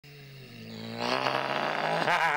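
A man's voice holding one long, steady note that swells louder. It steps up in pitch about half a second in and gets fuller and louder about a second in.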